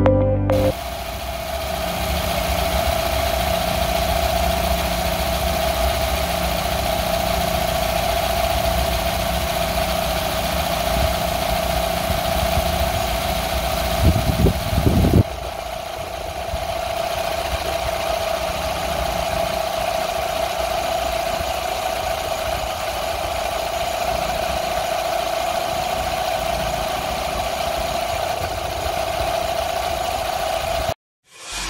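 A 2017 Nissan X-Trail's four-cylinder engine idling steadily, with a constant hum over it. A few low thumps come about halfway through.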